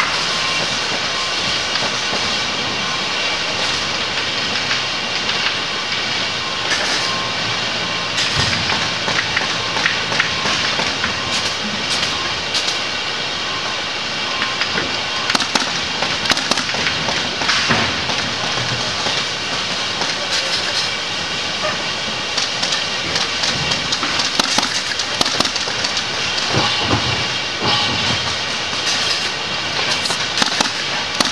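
Steady noise of mattress-factory machinery, with a handheld pneumatic stapler firing repeated sharp clicks as the fabric cover is fastened to the mattress. The clicks start about a quarter of the way in and come in quick runs, thickest in the second half.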